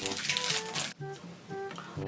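Quiet background music: a few short plucked acoustic-guitar notes.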